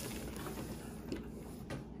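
A few light clicks and taps from handling a ceramic Christmas tree and its small plastic bird ornaments.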